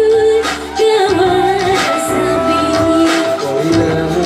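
A woman singing a pop song into a stage microphone over instrumental accompaniment with a steady beat, holding long notes.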